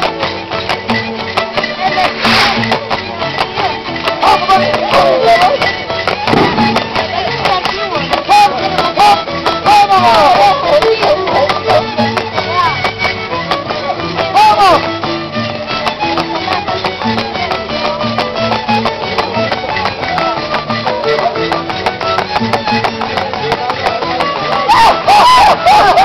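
Andean harp and violin playing a lively folk dance tune over a fast, even clicking beat, with voices mixed in.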